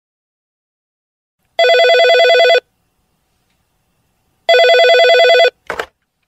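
Telephone ringing twice, each ring about a second of warbling two-tone trilling, about three seconds apart, followed by a short click near the end as the call is answered.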